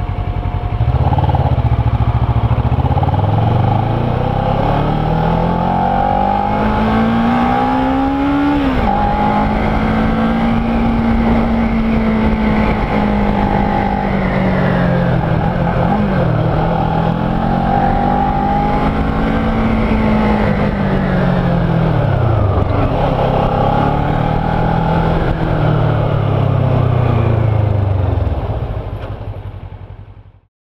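Kawasaki Ninja 650R's parallel-twin engine heard from the rider's seat while riding. The engine note climbs for about eight seconds, drops at a gear change, then rises and falls several times as the bike accelerates and slows, over steady wind and road noise. It fades out near the end.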